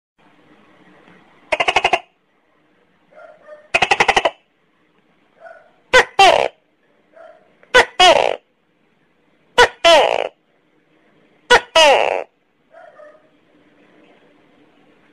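Tokay gecko calling: two rattling, rapidly pulsed croaks, then four loud two-part "to-kay" calls about two seconds apart, each falling in pitch.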